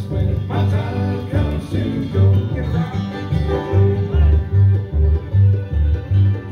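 Live bluegrass band playing acoustically: banjo, guitar, fiddle and mandolin over an upright bass plucking a steady, evenly pulsing bass line.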